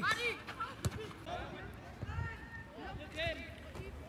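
Voices calling out on an outdoor football pitch, fainter than the close commentary around them, with a couple of short sharp knocks of a football being kicked near the start.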